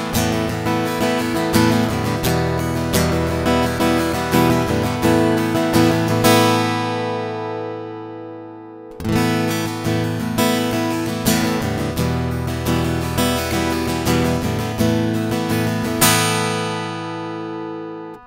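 Martin GPC-X2E acoustic-electric guitar strummed through its Martin E-1 under-saddle pickup, straight into an audio interface with no reverb or EQ. Two strummed passages, each ending on a ringing chord: the first with the tone control off, the second, starting about nine seconds in, with the tone control at halfway, which cuts the midrange.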